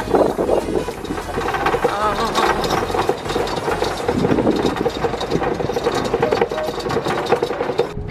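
A golf cart running steadily as it drives along, with a person laughing at the start.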